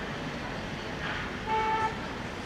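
A short horn toot, a steady pitched note lasting under half a second, about a second and a half in, over a steady hum of outdoor background noise.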